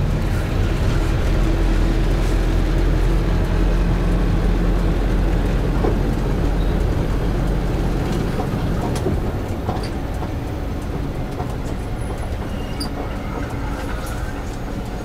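Steady low engine and road noise heard inside a moving minibus, with a few faint clicks and rattles from the cabin; it eases off slightly over the second half.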